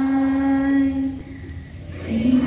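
A school choir of boys and girls singing a prayer song through microphones, holding one long note that ends a little after a second in, followed by a short breath before the next phrase.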